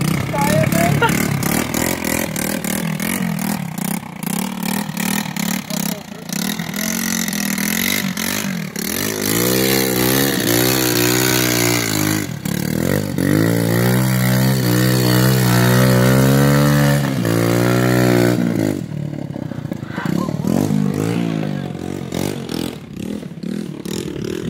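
Ram 170cc quad bike engine revving hard as the quad churns through a deep mud puddle, with mud and water splashing. About a third of the way in the engine surges up and down several times, then holds a long, high, steady pull before dropping back about three quarters through.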